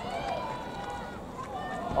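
Faint, distant voices calling out across an open athletics track, over steady outdoor background noise.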